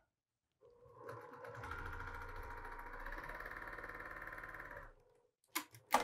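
Domestic electric sewing machine stitching a quarter-inch seam through cotton quilt pieces. It speeds up over about a second, runs at a steady, rapid stitch rhythm for about three seconds, then slows to a stop, with a few sharp clicks just after.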